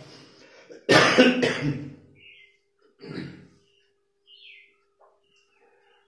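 A man coughs once loudly about a second in, then gives a shorter, softer cough or throat-clear around three seconds.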